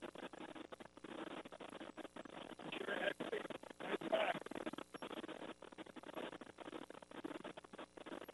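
Faint, crackly radio-link audio that keeps cutting out in short dropouts, with snatches of faint voices now and then, about three and four seconds in.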